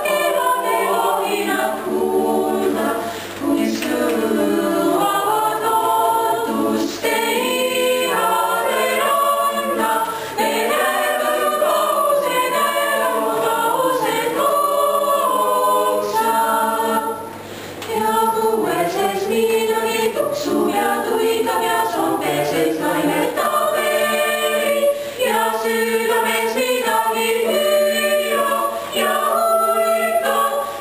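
Small mixed choir singing a cappella in several parts, with a short break between phrases about seventeen seconds in.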